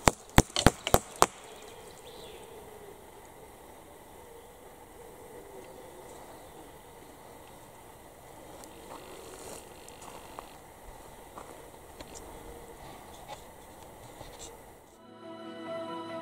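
About six sharp knocks in quick succession in the first second or so, then a faint steady background hush with a few tiny ticks. Music comes in about a second before the end.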